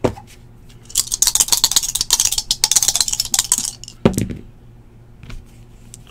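A pair of dice rattled in a closed hand, a fast clicking run of a few seconds, then one knock about four seconds in as they land on the table.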